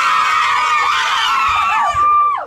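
A group of teenagers screaming together: many high voices at once in one long, loud, sustained scream.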